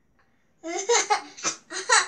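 A child laughing in several short bursts, starting a little over half a second in after a brief silence.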